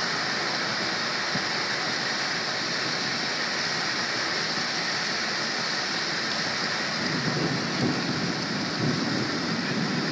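Steady rushing noise of rain and wind, with irregular low rumbling that grows from about seven seconds in.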